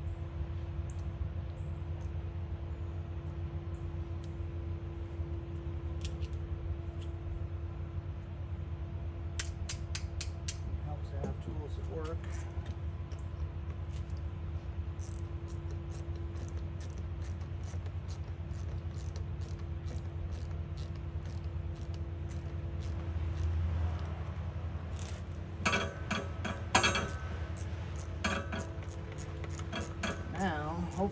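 Metal tools clinking and tapping against a tractor battery's cable clamp as it is tapped down onto the terminal post and tightened, in scattered clusters with the loudest clinks near the end. A steady low hum runs underneath.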